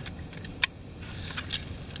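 A few light metal clicks from the all-steel Springfield Armory M6 Scout as its takedown pin is pulled and the gun is separated into its two halves; the sharpest click comes a little over half a second in.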